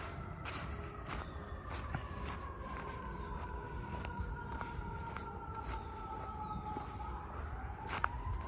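Faint emergency-vehicle siren wailing, its pitch sliding slowly down and then turning back up near the end. Footsteps crunch through dry fallen leaves at a walking pace.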